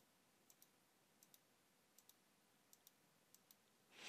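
Near silence with about ten faint computer mouse clicks, several in quick pairs, as checkboxes and rows in a software grid are clicked.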